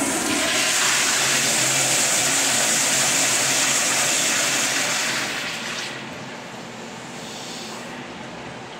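Wall-hung commercial toilet flushed by a chrome manual flushometer valve: a loud rush of water that starts right away and lasts about five seconds, then dies down to a quieter trickle about six seconds in.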